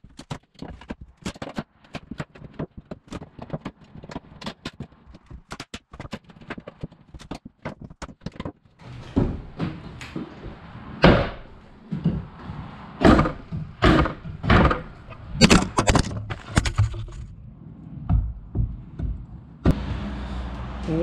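A steel flat bar prying at old wooden subfloor planks. First comes a run of light knocks and clicks on the boards, then from about nine seconds in a series of loud cracks and thunks as the planks are levered up.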